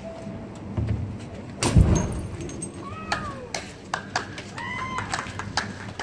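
A single loud bang a little under two seconds in, heavy in the low end, followed by a few short, high, wavering calls and scattered clicks.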